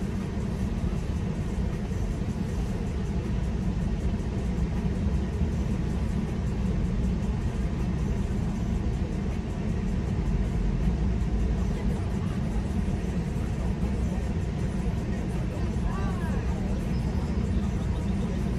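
Steady low rumble inside a parked car's cabin, typical of the engine idling with the heater running.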